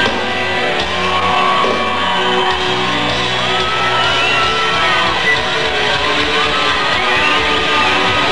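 Live rock music: a distorted electric guitar holds notes that bend and slide up and down in pitch over a steady low bass note.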